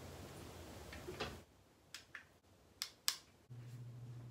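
A few faint, sharp clicks and taps of small objects being handled while hair is tied up into a ponytail, over quiet room tone; a low steady hum comes in near the end.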